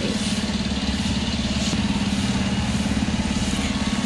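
A combustion engine idling steadily close by: an even, unbroken drone with a fast regular pulse.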